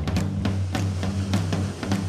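Mod-rock power-trio recording in a short instrumental gap between vocal lines: the drum kit keeps a steady beat over bass and electric guitar.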